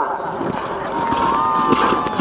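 Steady outdoor noise with wind on the microphone. About halfway through, a thin high whistling tone comes in and glides slightly.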